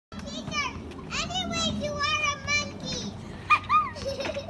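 A young girl's high-pitched voice chattering and calling out in short bursts, with two loud, short high cries near the end.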